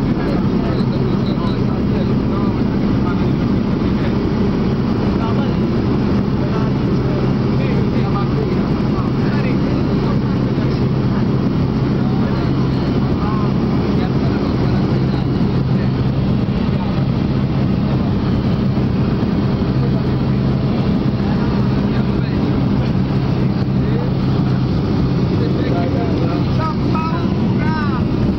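Small single-engine propeller plane's engine and propeller running steadily at high power through the takeoff roll and climb, a constant drone with a low hum, heard from outside the cabin under the wing.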